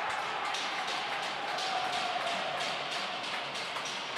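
Ice rink after a home-team goal: music over the arena's sound system mixed with crowd noise, holding at a steady level.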